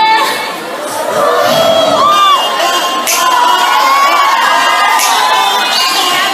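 Audience cheering and screaming in high-pitched voices at the end of a dance performance, with the backing music dropping away in the first two seconds.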